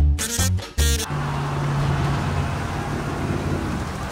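A short swing-style musical sting ends about a second in. It gives way to the steady rumble of landing-craft engines over the sea, with a low hum that fades out partway through.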